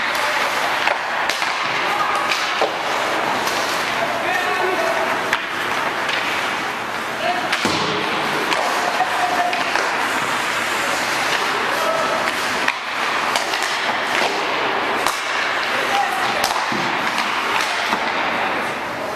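Ice hockey on an indoor rink: a steady scrape and hiss of skates on the ice, with frequent sharp clacks and thuds of sticks, pucks and the boards, and players calling out now and then.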